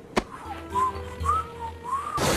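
A cartoon character whistling innocently: three or four short rising-and-falling notes about half a second apart, after a quick swoosh sound effect, over a low background music bed.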